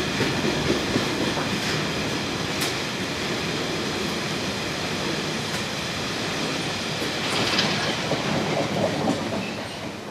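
Freight train of ballast wagons rolling past under a bridge: a steady rumble of wheels on rail, with clicks of wheels over rail joints and a faint high wheel squeal. It gets louder for a stretch near the end as the last wagons pass.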